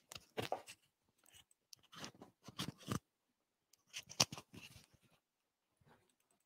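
Computer mouse and laptop being worked: three short clusters of clicks and light clattering, the loudest a bit past the middle.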